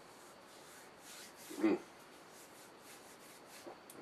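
Hands rubbing together in quiet, repeated strokes, with a short satisfied "mm" about one and a half seconds in.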